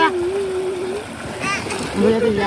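A voice calling out, one syllable drawn out on a steady pitch for about a second, then a short exclamation near the end, over steady background noise.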